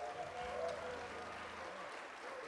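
Concert audience applauding at the end of a jazz number, with a few voices calling out from the crowd.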